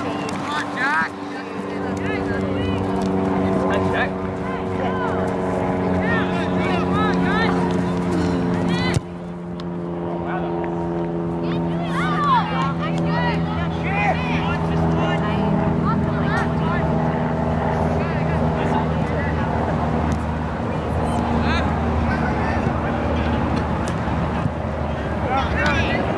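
A steady engine-like drone holding one pitch throughout, with voices and shouts over it; the sound drops suddenly about nine seconds in.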